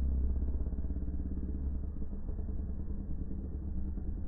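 Steady low rumble of a car driving, heard from inside a limousine's rear passenger cabin; a deeper hum at the very bottom fades out about half a second in.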